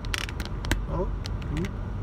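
Car driving slowly, heard from inside the cabin as a steady low road rumble, with a few irregular clicks and rattles.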